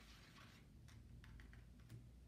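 Faint, irregular clicks and taps of a paintbrush handle stirring wet paint in the cups of a plastic ice cube tray, starting about half a second in.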